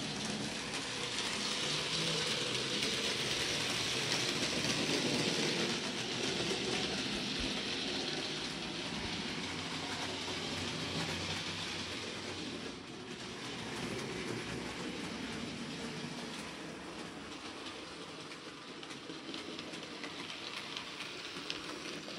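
Electric model train running on model railway track with its coaches: a steady whirring rattle of motor and wheels on the rails, a little louder in the first few seconds.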